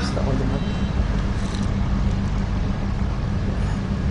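Steady low-pitched background hum, even in level throughout.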